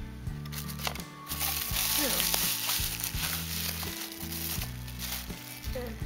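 Bubble wrap crinkling and rustling as a glass mug is unwrapped, loudest for a couple of seconds from about a second in, over background music.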